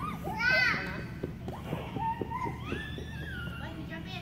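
Young children playing and vocalising: a loud high-pitched squeal about half a second in, then shorter calls, a few soft knocks and a long high call near the end, over a steady low hum.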